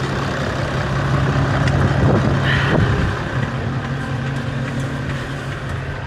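Diesel engine of farm machinery idling steadily, with a brief higher sound about two and a half seconds in.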